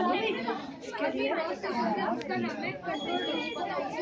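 Indistinct talking from several people at once, a steady babble of voices in a large room.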